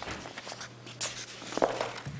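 A few soft knocks and handling sounds at a table close to the microphone, the loudest a thump about one and a half seconds in.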